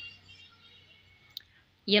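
Faint handling noise of a plastic cream jar turned in the hand, with a single sharp click about a second and a half in. A woman's voice starts right at the end.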